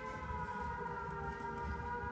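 A held chord of sustained electronic tones, sagging slightly in pitch just after it begins and then holding steady, with low thuds about twice a second underneath.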